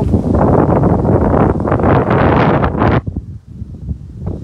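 Wind buffeting the microphone: a loud, rough rumble that drops away suddenly about three seconds in.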